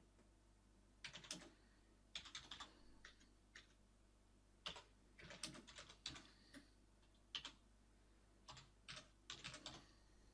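Faint computer keyboard typing: short runs of keystrokes with pauses between them, as commands are typed into a command prompt.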